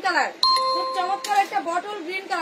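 A steady electronic chime starts suddenly about half a second in and rings for about a second before fading, over voices talking.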